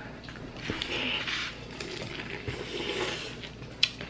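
Two drawn-out slurps of food being sucked into the mouth while eating noodles and shrimp, with small wet clicks and smacks of chewing around them.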